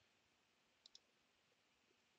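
Near silence with one faint computer mouse click, a quick press and release, about a second in.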